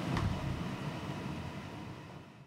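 Soft, even rushing noise that fades steadily away.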